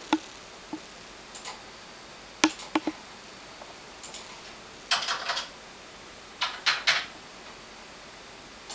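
Quiet room hiss broken by a few scattered clicks and two brief clusters of clattery handling noise, irregular and with no steady beat. No guitar is being played.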